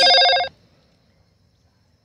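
A loud ringing tone of several steady pitches sounding together, cut off suddenly about half a second in; after that, near silence.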